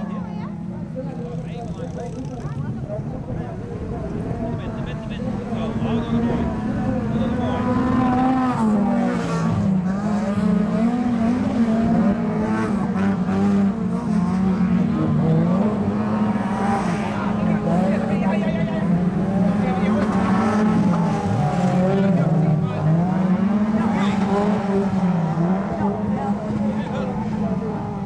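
Several autocross cars racing on a dirt track, engines revving up and falling back as the drivers throttle and lift through the corners. The sound grows louder from about six seconds in as the cars come closer.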